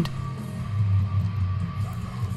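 Quiet background music with guitar and a steady low bass.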